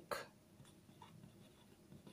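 Faint scratching of a marker pen writing on paper, a few short strokes.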